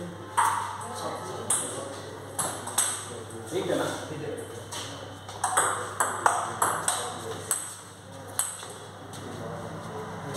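Table tennis ball clicking off bats and the table in a rally: about a dozen sharp clicks at uneven spacing, with a quicker run of clicks a little past halfway.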